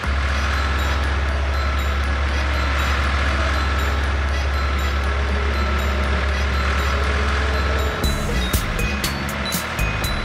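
Cartoon tractor engine sound effect: a steady low rumble that runs for about eight seconds, then stops and gives way to music with sharp clicks.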